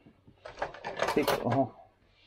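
A quick run of clicks and rattles from small plastic parts being handled on a desk, lasting about a second and a half, with a short spoken word partway through.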